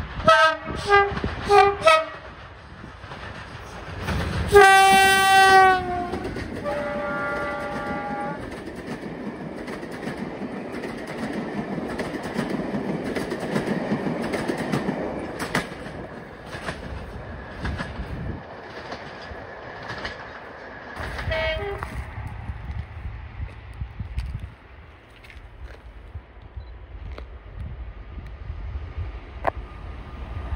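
Class 37 diesel locomotive sounding its two-tone horn: a few short blasts, then a long low note followed by a higher one. The train then passes with its English Electric diesel engine running and the wheels clicking over the rail joints, with a brief horn note again about two-thirds of the way through before it fades away.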